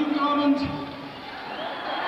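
A man's voice through a concert PA holding one pitched note for about a second before it drops away, over crowd noise in a large hall, as heard on an audience recording.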